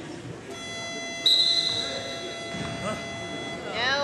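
Gym scoreboard buzzer sounding one long, steady, electronic tone for about three seconds, much louder after its first second, then cutting off. It marks time running out on a wrestling period.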